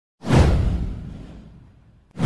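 Whoosh sound effect for an intro animation: a sudden rush of noise with a deep low end that sweeps downward and fades away over about a second and a half.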